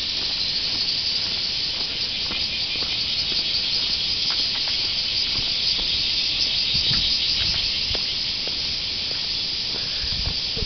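Steady high-pitched insect chorus in the trees, buzzing with a fine pulsing texture, with a few faint short knocks underneath.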